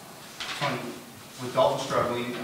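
A man's voice from off the microphone, speaking in short phrases in a small room: a reporter asking the next question. It starts abruptly about half a second in.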